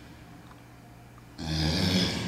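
A man's forceful, rasping exhale of effort, coming with a seated upward dumbbell punch. It starts suddenly about one and a half seconds in and lasts about a second.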